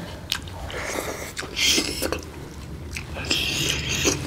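Two people chewing and smacking their lips as they eat rice and broccoli curry by hand, with a couple of sharp mouth clicks and short wet smacking bursts.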